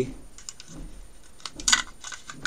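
Light plastic clicks and taps, with a cluster of louder sharp snaps about three-quarters of the way through: a battery being popped into a wireless Logitech mouse.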